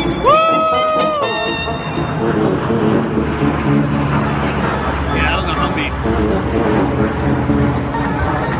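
Music mixed with people's voices, including one long, high, held call about a quarter second in.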